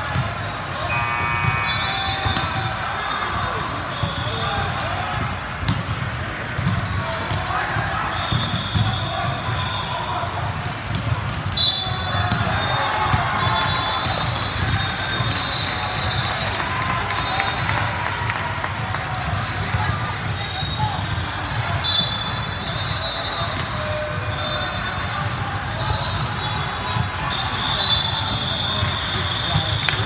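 The steady din of a large indoor gym: many people talking at once, with balls bouncing on the hardwood courts and repeated high-pitched squeaks, likely of sneakers on the floor.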